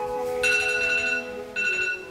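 A phone alarm ringtone going off in two bursts, starting about half a second in and again near the end, over soft background music.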